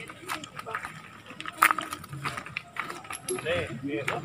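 Footsteps on a stony, leaf-strewn dirt trail: scattered irregular scuffs and clicks of several people walking, with faint voices of the group in the background.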